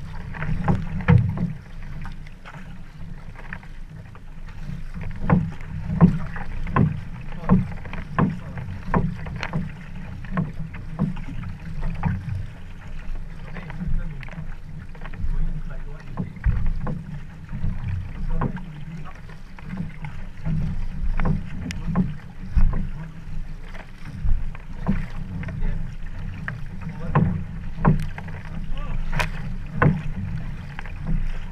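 Sprint canoe paddle strokes: blades catching and pulling through the water with a splash roughly every second, over a steady low rumble.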